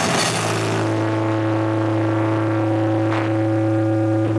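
Electric guitar and bass ringing out through their amplifiers at the end of a rock song: after the drums stop just after the start, a steady low drone holds, and a higher feedback tone joins about a second in.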